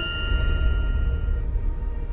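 A single bell-like ding that rings out and fades over about a second and a half, over low background music.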